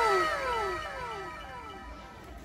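An added editing sound effect: a pitched cry that slides down in pitch and repeats about every half second as fading echoes, dying away over two seconds.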